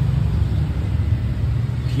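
Steady low rumble of vehicle engines in the background.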